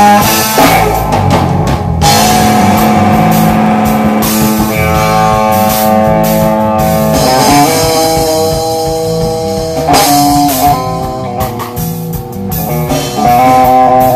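A band playing live at a soundcheck: electric guitar and bass over a drum kit, with held chords changing every few seconds. The camera recording sounds rough and loud.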